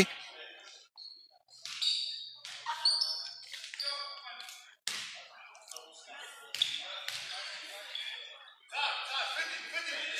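Faint gymnasium sound: players' and spectators' voices echoing in the hall, with a few thuds of a basketball bouncing on the hardwood floor. The clearest thud comes about five seconds in.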